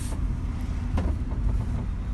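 Mercedes Sprinter camper van driving slowly through town, its engine and road noise heard as a steady low rumble inside the cab, with a single click about a second in.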